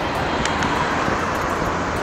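Steady road traffic noise with wind on the microphone while riding, as a car drives past close alongside.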